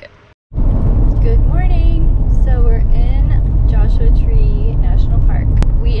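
Steady road and engine rumble heard inside the cab of a Ford Transit camper van on the move, loud and low, starting abruptly about half a second in.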